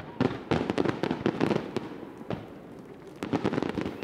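Fireworks display going off: a rapid series of bangs and crackles from bursting shells, thinning out about two and a half seconds in, with a few more bangs near the end.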